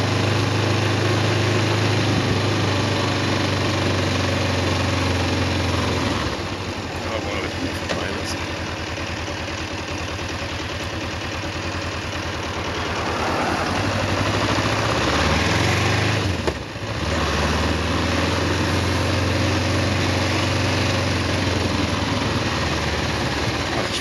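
Kawasaki EN 500 parallel-twin motorcycle engine running under way, with road and wind noise. The engine note drops about a quarter of the way in, climbs in pitch past the middle, breaks off briefly, then pulls strongly again.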